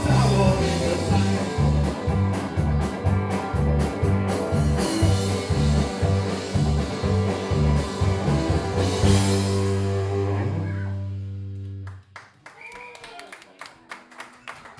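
A live rock band of electric guitars, bass guitar and drum kit plays the close of a song in a steady driving rhythm, then holds one final chord that rings out and fades away. Scattered audience clapping follows near the end.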